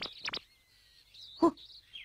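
Faint bird chirps in an outdoor background ambience, with brief spoken words just at the start and about a second and a half in.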